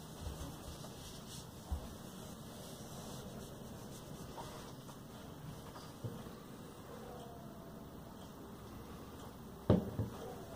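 Quiet handling sounds on a workbench: a few light knocks, then one short, louder thump near the end.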